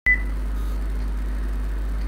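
A short high beep right at the start, then a steady low hum with no speech.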